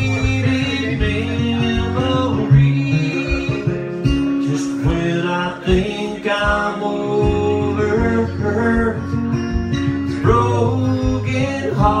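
A man singing with his own strummed acoustic guitar.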